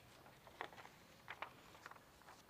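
Near silence: quiet room tone with a few faint, brief clicks.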